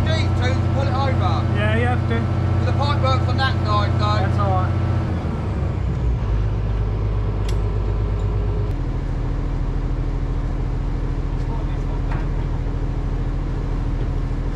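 Diesel engine of an excavator running steadily, its engine speed stepping down about a third of the way in and again near the middle. Voices call out over it for the first few seconds.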